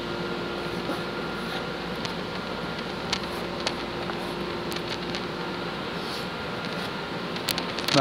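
A few light wooden clicks and taps as a thin strip of scrap wood is worked into the slots of a laser-cut wooden tray. A steady hum runs underneath.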